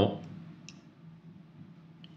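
A voice finishing a spoken question, then a quiet pause with a faint steady low hum and a couple of faint clicks.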